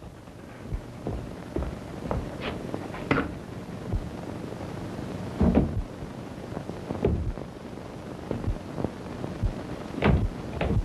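Heavy riveted metal doors closing with a steady rumble and scattered knocks and thuds, the loudest about five and a half seconds in. Old film soundtrack with hiss underneath.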